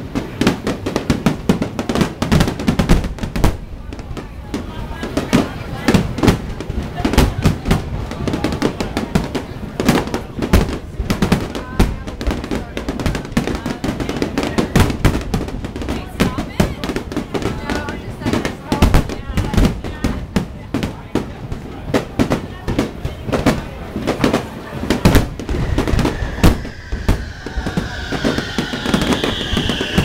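Fireworks display: dense, irregular bangs and booms of exploding shells, several a second. Near the end a high tone slides down in pitch over the bangs.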